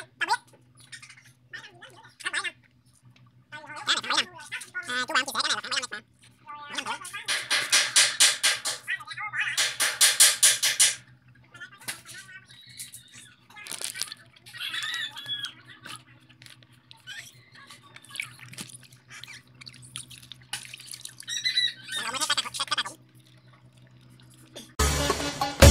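Live striped catfish (cá tra) thrashing in a plastic bag of water, splashing in irregular bursts, with the longest and loudest run about seven to eleven seconds in.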